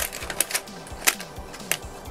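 A small clear plastic bag crinkling as it is pulled open by hand, with a few sharp separate crackles. Faint background music plays underneath.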